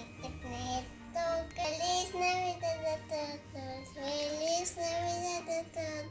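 A child's voice singing a melody in held notes that rise and fall, with music under it.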